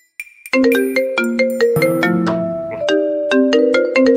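Mobile phone ringtone playing a bright, marimba-like melody of quick notes over chords, starting about half a second in.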